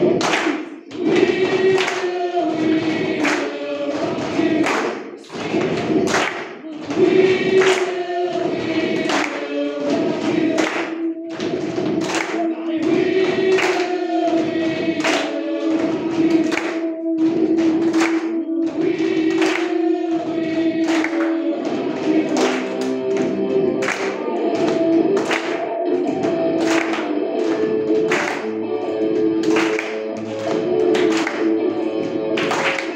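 A group of children doing body percussion, clapping and slapping on a steady beat, along with music that has choral singing.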